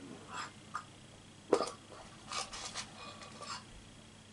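Poké Ball tin being handled and worked open by hand: a few short clicks and knocks, the loudest about a second and a half in, then a quick cluster of smaller clatters.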